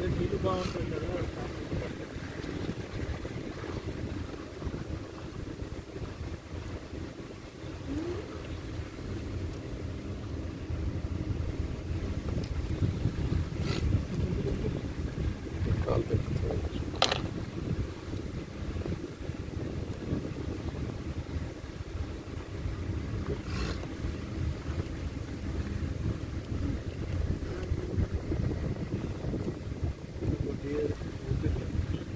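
A moving vehicle's running noise mixed with wind buffeting the microphone: a steady low rumble. It is broken by a few short, sharp clicks at about 14, 17 and 23 seconds in.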